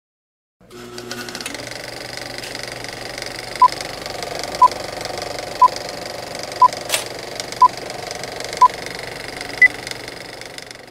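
Old film-projector sound effect: a steady mechanical clatter, with a short beep once a second, six at one pitch and then a seventh, higher one near the end. A single sharp crackle sounds about seven seconds in.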